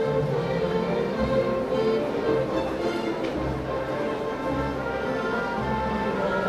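Symphony orchestra playing classical music: held string notes over a bass line that moves in steps about every second.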